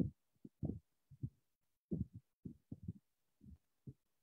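A voice coming through a weak internet call connection, broken into short muffled fragments that cut in and out, too garbled to make out any words.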